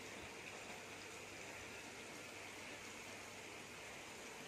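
Faint steady hiss of background noise with a faint low hum underneath; no distinct sound stands out.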